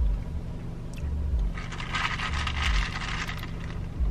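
A plastic straw stirring ice in a plastic cup of iced shaken espresso: a rattling scrape of ice for about a second and a half in the middle, with dull bumps of the cup being handled.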